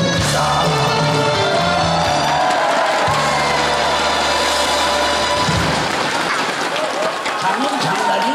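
A live stage band plays with steady bass notes, then stops about five and a half seconds in, leaving the audience cheering and clapping.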